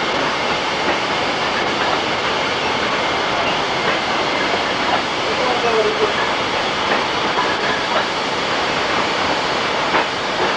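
Wine bottling line running: a steady, dense mechanical noise from the filling machine and conveyor, with occasional faint clinks of glass bottles.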